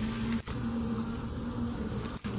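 A flying insect buzzing, a low steady hum that breaks off briefly about half a second in.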